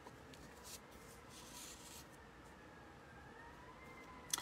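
A faint, distant emergency siren wailing through open windows, its pitch slowly sliding and rising near the end. A few light scratches of a pencil on paper sound over it.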